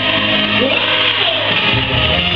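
Loud live rock music played through a PA, with electric guitar and a sung line that slides in pitch. The bass and drums come in heavier near the end.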